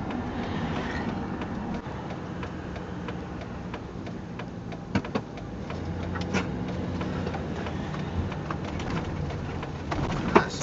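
Steady engine and road noise inside a motorhome's cab while driving, the low engine note growing stronger about six seconds in. Two short sharp clicks or rattles come at about five and six seconds in.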